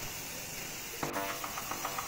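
Aerosol spray-paint can hissing as paint is sprayed onto a cotton T-shirt. Background music comes in about a second in.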